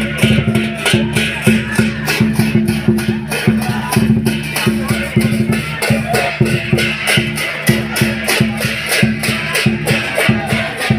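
Chinese lion dance percussion: a big barrel drum with cymbals clashing in a fast, steady beat.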